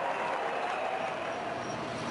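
Steady hum of a large stadium crowd, an even wash of noise with indistinct voices in it.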